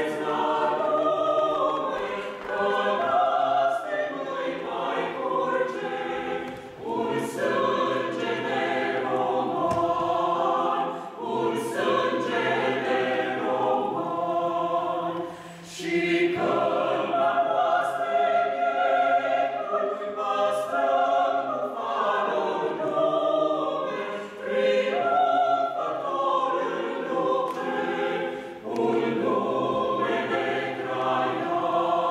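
Small mixed choir of men's and women's voices singing a cappella. It sings in sustained phrases, with short breaks at about six and a half, eleven and fifteen seconds in.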